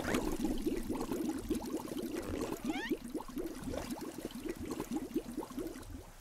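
Water bubbling and gurgling as air bubbles rise and pop at the surface: a quick patter of small pops, dense at first and thinning out toward the end.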